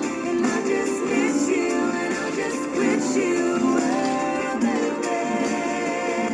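Acoustic guitar being played steadily, with a man's voice singing along in gliding, held notes.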